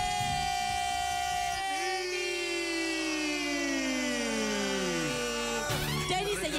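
Presenters' voices holding a long, drawn-out shout of a name over their microphones: a high voice held steady for about a second and a half, then a lower voice sliding slowly down in pitch for about three seconds before breaking off near the end.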